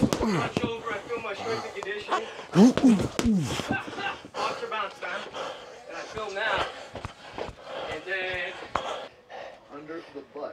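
Boxing gloves striking a freestanding heavy bag in a run of punches, heard as short sharp thuds scattered through, under a voice.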